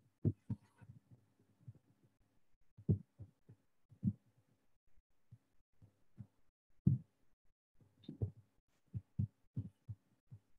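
Soft, irregular low thumps picked up by an open video-call microphone, about a dozen at uneven intervals, over a faint steady hum.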